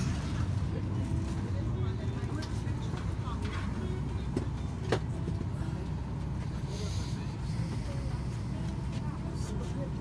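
Steady low rumble of an airliner cabin's air supply while the plane sits at the gate during boarding, with faint passenger chatter and one sharp click about five seconds in.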